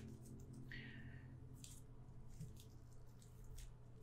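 Near silence with faint, scattered clicks and light rustles of hands turning a carbon-fibre quadcopter frame, over a steady low hum.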